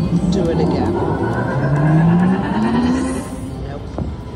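Jungle Wild slot machine sound effects: a tone climbing steadily in pitch for about two seconds as the reels spin, the machine's build-up for a bonus that does not land (a teaser). It stops rising and falls away about three seconds in, over casino background noise.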